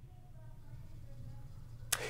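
Quiet pause in a man's speech: faint, steady low room hum, with one brief sharp click near the end just before he speaks again.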